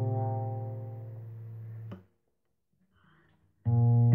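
A guitar chord rings and fades for about two seconds, then breaks off abruptly into silence. A new strummed chord comes in sharply near the end.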